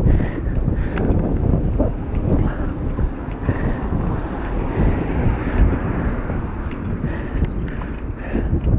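Wind buffeting the microphone of a handlebar-mounted camera on a moving bicycle: a loud, unsteady low rumble, with a few light clicks.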